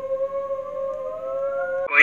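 A single held tone with one overtone, slowly rising in pitch, that cuts off just before the end.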